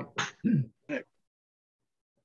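A person clearing their throat in about four short bursts, all within the first second.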